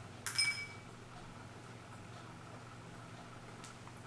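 A single sharp metallic clink with a brief, bright high ring a moment in, from brass anniversary-clock parts striking as the movement is lifted off its base.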